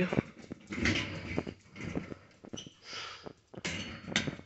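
A small dog making small sounds as it moves about on a tile floor, with scattered short clicks and rustling.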